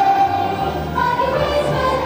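A kindergarten children's choir singing together, holding sustained notes that change every half second or so.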